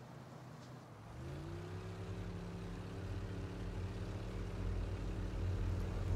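A yacht's engine starting up: about a second in a hum rises quickly in pitch and settles into a steady drone, over a low rumble that grows louder.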